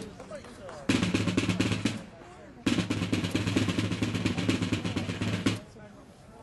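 Military field drum playing rolls: a short roll of about a second near the start, then a longer roll of about three seconds that stops shortly before the end.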